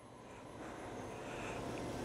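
Faint, even background noise of a quiet, empty factory floor, slowly growing louder, with no distinct sounds in it.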